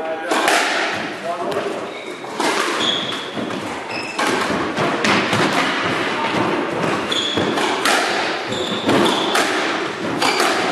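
Squash rally: the ball struck by rackets and hitting the court walls, in irregular sharp knocks about every second, with short high squeaks in between from shoes on the wooden floor.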